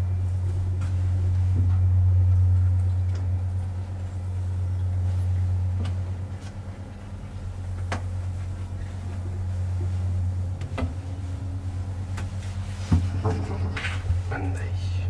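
KONE hydraulic elevator car travelling upward, a steady low hum running through the ride and swelling and easing as it goes. Scattered light clicks and ticks come from the car and shaft, with a sharper click about a second before the end as the car reaches its floor.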